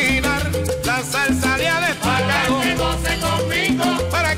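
Salsa music by a sonora band in an instrumental passage: a repeating bass figure and percussion under bending melody lines.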